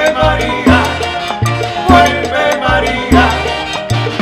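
A Latin dance orchestra playing an instrumental passage: a horn section over bass and percussion, with bass notes falling on a steady, quick dance beat.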